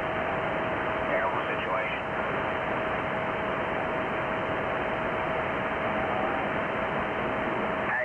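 Radio receiver static from the transceiver's speaker: a steady hiss with a constant whistle from an off-tune carrier, and faint garbled voices of other stations about a second in and again near six seconds.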